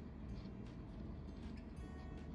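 Soft scratches of a ballpoint pen tip drawing short strokes on paper, heard over quiet background music.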